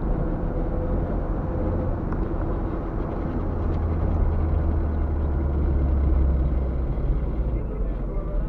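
Steady low rumble of a car's engine and tyres on the road, heard from inside the cabin while driving, swelling slightly a few seconds in.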